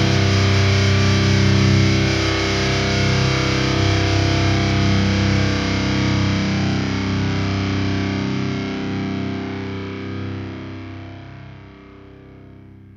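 Metalcore band ending a song on a distorted electric guitar chord, held and ringing, that fades slowly away over the last few seconds.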